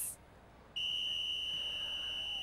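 Volleyball substitution buzzer: one steady, high-pitched electronic tone that starts abruptly about three quarters of a second in and holds, signalling a player substitution.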